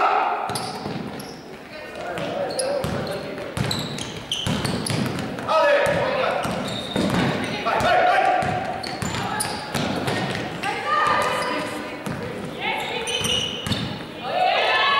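Basketball bouncing on a sports hall floor during play, a string of short knocks, with players' voices calling out. Everything echoes in the large hall.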